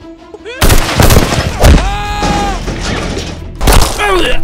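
A loud, rapid volley of gunfire sound effects breaks out about half a second in, dense and crackling, with another sharp burst near the end.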